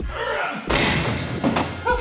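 A chair thrown up against a tall plywood wall, hitting it with a loud thump a little under a second in and clattering on briefly after.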